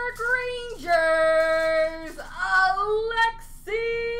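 A person singing wordlessly in a high voice, long held notes with slides between them.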